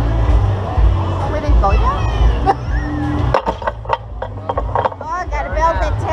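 Wind buffeting the microphone of a ride-mounted camera as an amusement ride flings its riders through the air, with a woman's high, wavering shrieks about two seconds in and again near the end.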